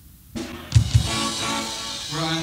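Live rock band heard through a cassette recording: tape hiss, then a burst of drum kit with two heavy bass-drum hits close together and an electric guitar ringing.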